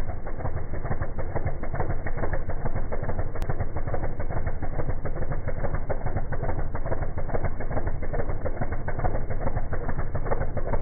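Chevy II Nova drag car's engine idling steadily at the starting line, with an even, rapid pulsing and no revving.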